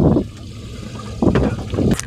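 Wind rumbling on the microphone over open water, with water lapping, growing louder about a second in. A single sharp click comes near the end.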